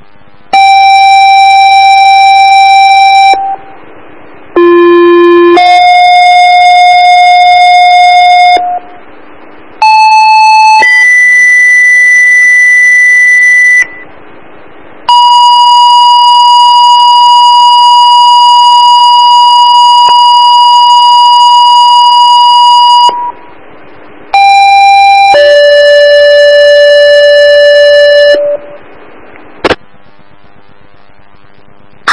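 Two-tone sequential paging tones sent over a dispatch radio channel: steady electronic beeps in pairs, each a short tone stepping to a longer one at a different pitch, with a single long held tone about the middle. They alert the fire and ambulance crews to be dispatched.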